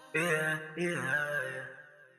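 A male voice sings two short sustained phrases with no beat behind it, and the second phrase fades away.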